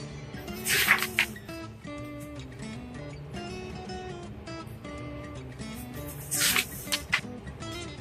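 Soft background music, a simple melody of short notes, with two brief rustles about a second in and near the end, from the picture book's pages being handled and turned.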